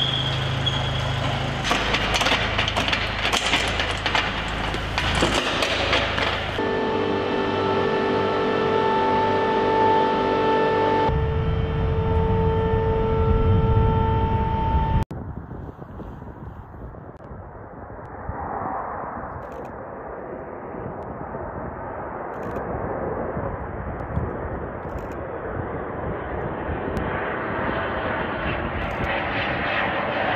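For about the first fifteen seconds, steady machine noise with a steady whine that changes in steps, cutting off suddenly. After that, an F/A-18 Hornet jet on approach, its engine noise growing steadily louder and brighter as it comes closer.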